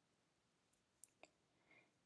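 Near silence, with two faint clicks about a second in, a quarter second apart.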